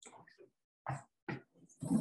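Short, broken bursts of a person's voice making unclear sounds, then a louder, rougher vocal sound near the end.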